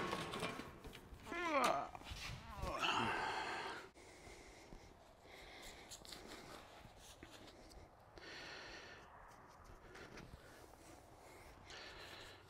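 A steel hitch-mount cargo basket being worked out of a Jeep's rear: a few short metal squeaks and a scrape in the first few seconds, then faint shop room tone.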